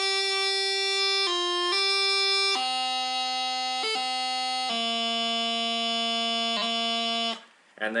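Practice chanter playing a slow phrase of held notes, stepping from note to note, with brief grace-note taps breaking up repeated notes twice; the playing stops shortly before the end.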